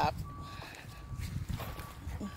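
Distant vehicle reversing alarm beeping, one steady tone repeating about one and a half times a second, over a low rumble.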